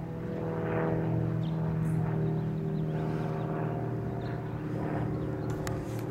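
A steady, pitched mechanical hum like an engine running, holding the same pitch throughout, with a few faint clicks near the end.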